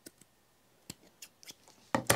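Scissors snipping through the edge of a thin, still-wet paper tag with lace glued inside it. A few separate short cuts, irregularly spaced.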